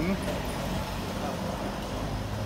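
Street traffic noise: a steady hum of motor vehicles with a low, even engine drone underneath.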